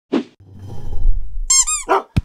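Sound effects for an animated intro title: a short swish, a low rumble that swells, then two quick high-pitched squeaks near the end.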